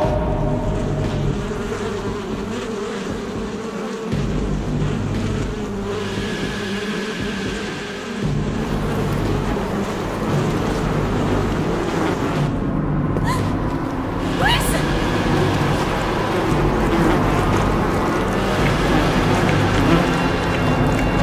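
A swarm of flying insects buzzing in a dense, continuous drone.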